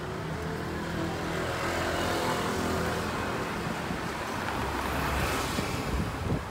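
Street traffic: a motor vehicle's engine running past close by, swelling in the first couple of seconds and easing slightly toward the end.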